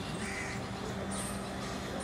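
A bird calls once, briefly, a fraction of a second in, over a steady low hum.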